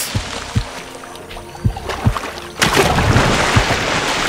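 Background music with water splashing, thrown up by a yacare caiman's courtship display. A few short low thuds come in the first half, and a dense rush of splashing starts about two-thirds of the way in.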